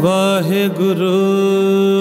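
A male kirtan singer's voice enters with a short wavering, ornamented phrase and then holds one long steady note, over a sustained harmonium accompaniment.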